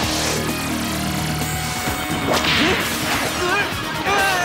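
Cartoon fight sound effects: a whoosh at the start with a tone sliding downward, then a second whoosh a little past halfway. Wavering, warbling tones begin near the end.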